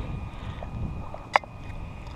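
Handling noise from an RC buggy's chassis being lifted and turned over by hand, with one sharp click a little past halfway and a few faint ticks, over low wind rumble on the microphone.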